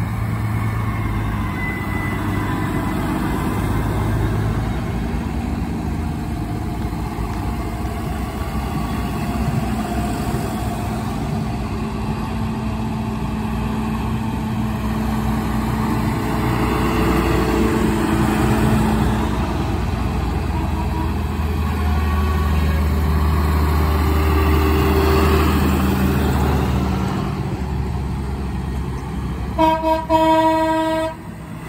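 A procession of farm tractors driving past one after another, their diesel engines running steadily and swelling as each one passes close. A horn sounds right at the end.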